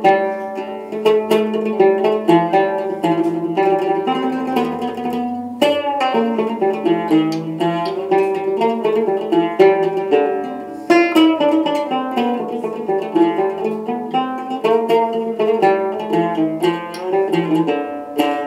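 Solo cümbüş, a fretless Turkish banjo-like lute with a skin head, playing a melody of quick plucked notes over a sustained low note.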